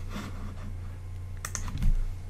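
A few keystrokes on a computer keyboard as a spreadsheet formula is typed, over a steady low hum.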